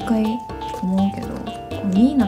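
Background music with held notes, with a woman's voice talking over it.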